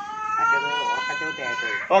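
A young child's long, high-pitched held call, rising slightly and lasting nearly two seconds, with adults talking underneath.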